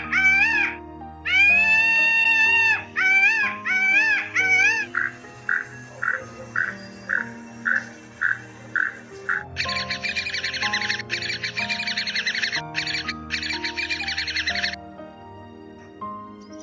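Male Indian peafowl calling: a series of loud, high wailing calls with one longer drawn-out call among them. From about five seconds in, a toucan gives short calls repeated about twice a second, then long stretches of dense rattling croaks. Background music with sustained notes plays throughout.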